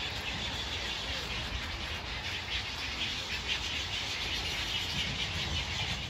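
Natural outdoor ambience: a steady, dense chorus of high-pitched animal calls over a low rumble.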